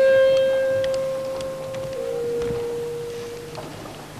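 Opera music from a live stage performance: a single long held note, stepping slightly lower about two seconds in and fading out shortly before the end.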